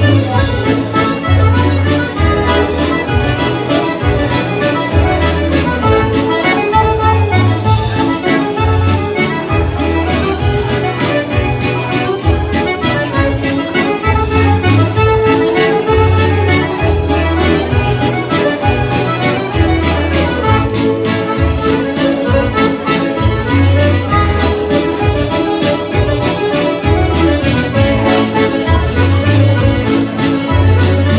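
Chromatic button accordion playing a lively dance tune over a steady drum beat and pulsing bass line.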